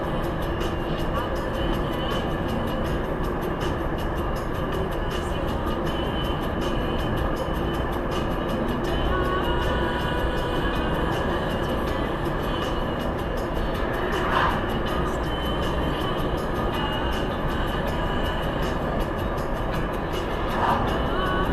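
Steady road and engine noise inside a car's cabin while driving at about 70 km/h, with music playing along.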